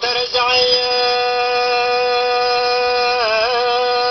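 Music from an old Tunisian song: a single long melody note held steady for about three seconds, then wavering in an ornamented turn near the end.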